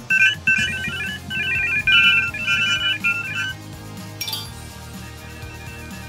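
A quick run of short electronic beeps from smartphone dial pads as numbers are tapped in, lasting about three and a half seconds over background music. A short, sharp chime follows about four seconds in.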